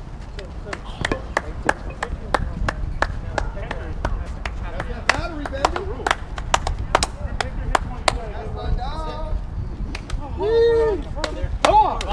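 Sharp, irregular claps from baseball players gathered at home plate, with shouts and a loud held yell near the end as they greet a home run. A low wind rumble sits on the microphone.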